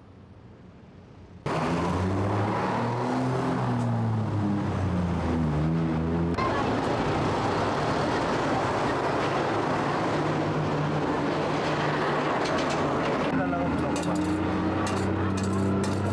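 Loud street traffic noise with a heavy vehicle engine running and slowly changing pitch, mixed with voices. It starts suddenly about a second and a half in, and the sound shifts abruptly twice, with light clicks near the end.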